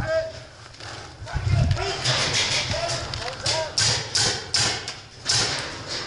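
A paintball player's hurried footsteps and gear rattle as he moves quickly on foot, a few short irregular scuffs and knocks, with brief distant shouts from other players.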